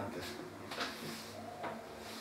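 A few faint taps of chalk against a blackboard, three light knocks spread over the two seconds.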